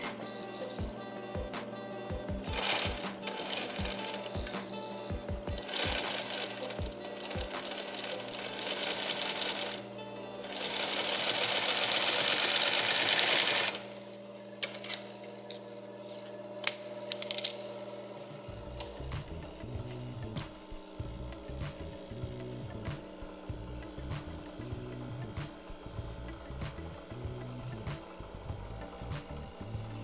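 Industrial double-needle sewing machine stitching, first in short starts, then one longer, louder run of about three and a half seconds starting about ten seconds in. A couple of sharp scissor snips follow, with background music throughout.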